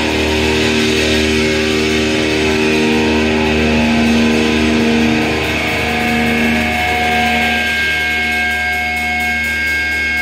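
Electric guitar through a stack amplifier ringing out a long held chord with no drums playing, and steady high feedback tones coming in about six seconds in.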